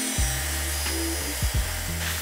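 Background music with a steady bass line over the high whine of a handheld grinder cutting into the edge of a metal motorcycle fender.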